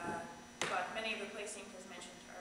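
A woman speaking, with a brief sharp tap about half a second in.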